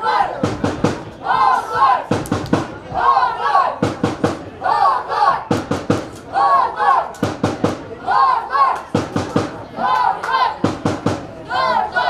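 Football supporters chanting in a repeated rhythmic shout to drum beats, a burst of chant every second or two.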